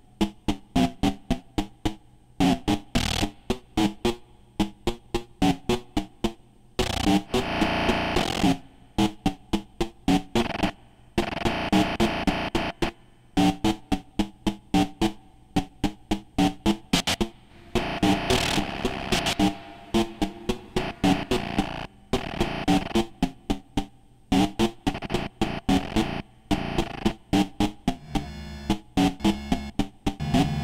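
Eurorack modular synthesizer patch voiced through a Zlob Modular VnIcursal VCA: a quick stream of short, sharp synthesized hits and pitched blips, broken every few seconds by longer dense, distorted noisy swells, with the texture changing near the end.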